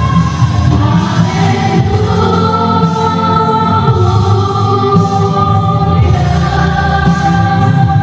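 Live gospel worship song: voices singing long held notes together, with electric guitar and band accompaniment.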